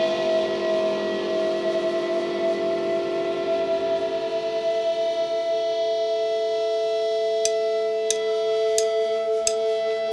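Sustained, ringing electric guitar chord held as a drone. About seven and a half seconds in, light ticks start at a steady beat of about three every two seconds.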